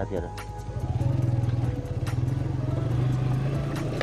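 A motor vehicle's engine running with a steady low hum, coming up a little about a second in and then holding an even pitch.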